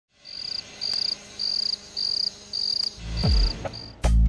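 A cricket chirping in short, evenly spaced trills, a little under two a second. A low rumble swells in during the last second.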